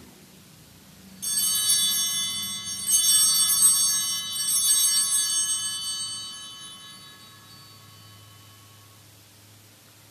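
Altar bells (Sanctus bells) rung at the elevation of the consecrated host: a cluster of small metal bells struck about a second in and again twice at roughly one-and-a-half-second intervals, then ringing out and fading.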